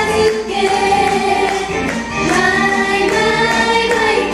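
A small group of women singing together in unison into microphones, over backing music with light, regular percussive beats.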